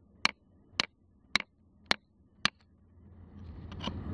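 Hammer blows on a steel chisel cutting into a pyrrhotite seam: five sharp strikes about half a second apart, breaking off chunks of the mineral. Faint scraping and rustling of loosened material rises near the end.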